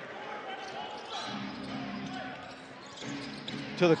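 Arena sound of a basketball game: a ball being dribbled on the hardwood court under a low murmur of crowd voices.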